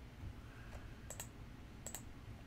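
Computer mouse clicks: a faint tick, then two sharp clicks about a second in and near the end, each a quick pair of ticks, over a faint low room hum.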